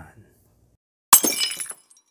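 Glass shattering: one sudden crash about a second in, with bright ringing pieces that die away in under a second.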